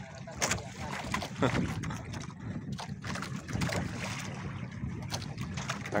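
Low steady hum of a small fishing boat's engine at sea, mixed with wind on the microphone and water against the hull.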